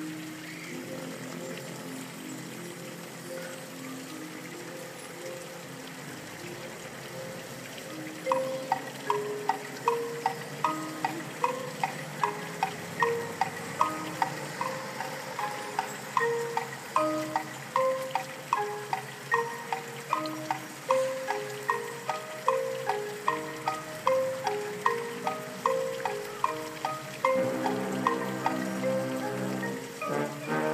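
Marching band playing: held notes at first, then from about eight seconds in a steady beat of struck notes, about two a second, under the melody. Near the end the full band swells in.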